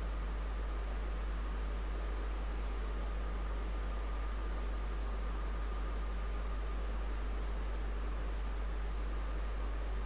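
Steady background noise: an even hiss over a constant low hum, with a faint steady high whine and no distinct events.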